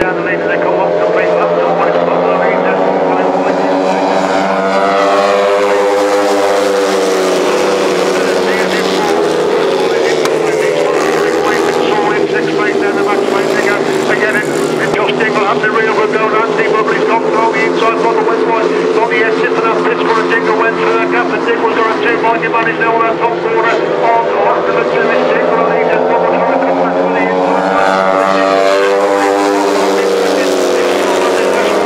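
Solo racing motorcycles revving hard on a sand track, the engines' pitch rising and falling as the bikes accelerate and pass. The pitch drops as one goes by about five seconds in and climbs again near the end.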